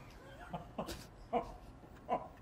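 A woman laughing in about three short bursts, each one falling in pitch.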